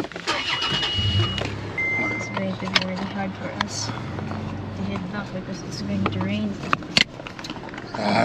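Toyota FJ Cruiser's 4.0-litre V6 engine starting about a second in, after two short beeps, then running steadily as the truck moves off.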